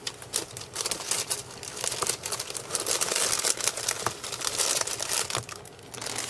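Clear plastic card sleeves crinkling as they are handled, with an irregular stream of sharp crackles.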